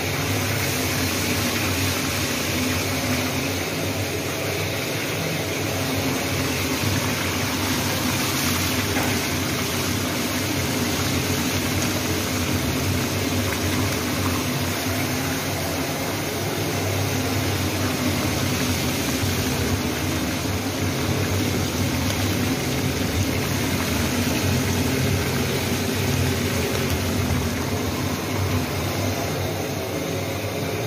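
Masala-coated trout deep-frying in hot oil in a wok over a gas burner: a steady, unbroken sizzle with a low rush beneath it.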